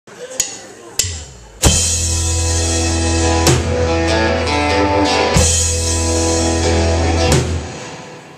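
A live indie rock band starting a song: two sharp clicks, then the full band comes in together at about a second and a half with acoustic and electric guitars, keyboard and drums. Cymbal crashes land about every two seconds, and the chord dies away near the end. The sound is somewhat rough, as recorded on a cheap camera.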